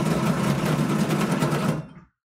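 Bubble craps machine shaking two dice under its dome: a fast, steady rattle over a low hum, which stops shortly before the end as the dice settle.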